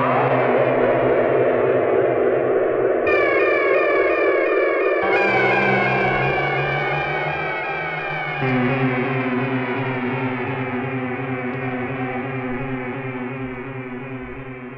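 Electronic synthesizer music: layered steady drones under sweeping, gliding electronic tones. The texture switches abruptly about three, five and eight seconds in, and the level slowly falls over the last few seconds.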